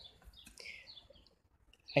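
Birds chirping faintly in the background, a few short chirps in the first second.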